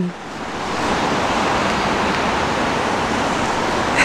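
A steady rushing hiss of noise, swelling in over the first second and then holding at an even level.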